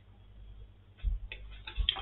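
A few faint small clicks and two low thumps in the second half, otherwise quiet.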